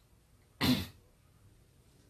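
A person clearing their throat once, briefly, a little over half a second in.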